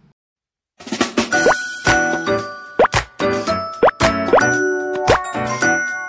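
A short, bright promo jingle with chiming notes, punctuated about once a second by quick upward-sliding plop sound effects. It starts about a second in, after a moment of silence.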